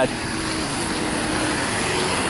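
Road traffic: cars driving past make a steady wash of engine and tyre noise, with a faint steady hum that fades out near the end.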